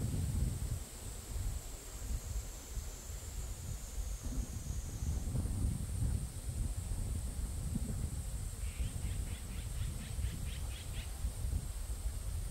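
Outdoor ambience: a bird gives a quick run of about a dozen short chirps, roughly five a second, near the end, over a steady high hiss and a low rumble.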